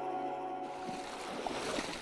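A held guitar chord from the music bed fades out within the first second. The steady rush of river water follows.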